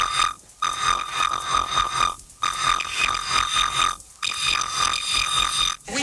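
Techno breakdown with the kick drum and bass dropped out: a bright, alarm-like synth tone pulsing rapidly, broken by a short silent gap about every two seconds.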